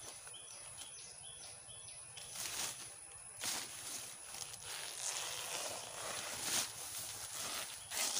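A machete hacking at a banana stem over dry banana leaves: several noisy chopping and rustling bursts as the blade and the handled stalk brush through the dry trash. A repeated high chirp sounds in the first couple of seconds.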